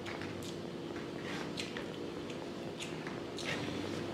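Close-miked eating sounds: irregular wet squishes and smacks from rice and pork curry being mixed by hand and chewed, over a steady low hum.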